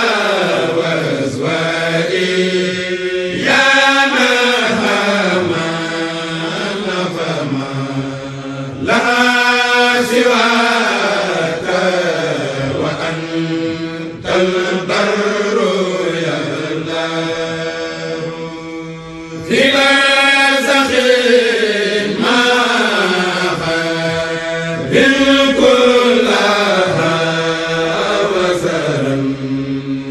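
Voices chanting an Arabic devotional poem (khassida) in a slow, drawn-out melody without instruments. The chanting runs in long phrases of several seconds each, with brief breaks between them.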